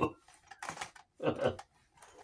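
Carded blister-pack toys being handled and shifted, giving a few short bursts of light plastic and card clicks and rustles.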